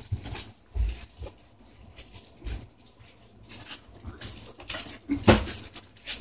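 Faint, scattered chewing and mouth noises from children working hard sour gumballs, with a few soft low thumps and a louder one near the end.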